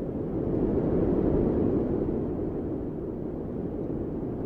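A low, pitchless rumbling noise that swells up over the first second or so and then holds steady.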